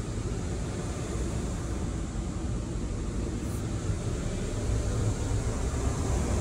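Steady blowing noise inside a pickup's cabin, typical of the climate-control fan running, with a low rumble underneath.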